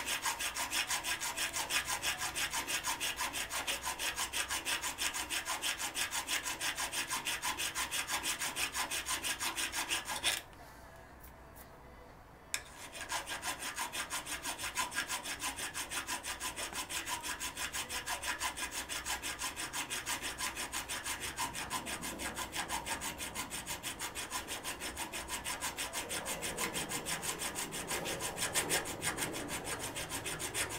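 Hand file rasping back and forth over the protruding screw ends of a Weber DCOE carburettor's throttle butterfly spindle, filing the factory-secured threads flush so the screws can be unscrewed. Quick, even strokes, with a break of about two seconds a third of the way in.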